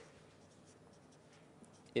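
Faint sound of writing on a board during a pause in a lecture.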